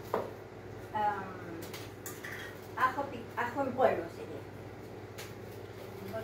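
Brief, quiet speech in two short stretches over a steady low hum, with a sharp click right at the start.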